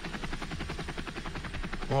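Helicopter rotor blades beating in a fast, even pulse over a low rumble, the TV camera helicopter heard in the broadcast sound.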